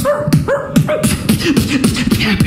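Beatboxing, all made with the mouth into a cupped microphone: imitated dog barks woven into a rhythmic beat of kick and hi-hat sounds.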